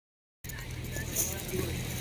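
Steady low hum of a running engine, starting about half a second in, with faint voices in the background.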